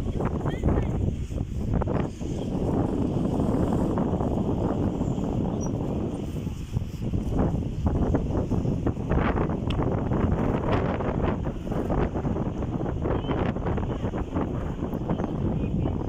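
Wind blowing across the phone's microphone: a loud, uneven low rumble that swells and dips with the gusts.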